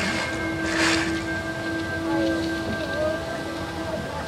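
Show music with long, steady held notes over the continuous rush of spraying water jets, with a short, louder rush of spray about a second in.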